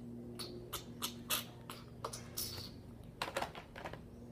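Irregular clicks and scuffs of hands handling things close to the microphone, with the loudest knocks about a third of the way in and again near the end, over a steady low hum.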